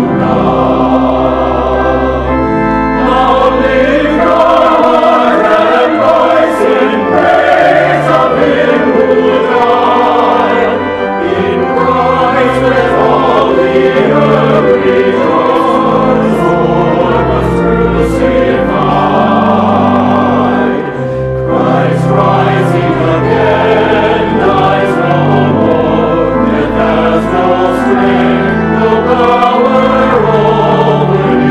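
Mixed church choir singing a hymn, men's and women's voices together, over sustained low organ notes, with short breaks between phrases about eleven and twenty-one seconds in.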